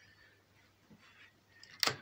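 Faint steady hum from the voltage stabilizer's transformer, then a single sharp plastic click near the end as a hand presses at the mains power strip feeding the freezer.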